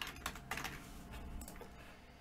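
Typing on a computer keyboard: a quick run of faint key clicks.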